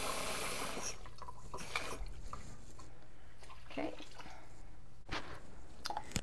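Water poured into a hot skillet of browned ground beef, hissing and tailing off within the first second. After that only a low steady hum and a few light clicks.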